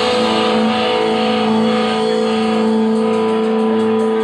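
Live blues-rock band holding out the closing chord of the song: a blues harmonica wails long steady notes over sustained electric guitar and bass, with light cymbal taps near the end.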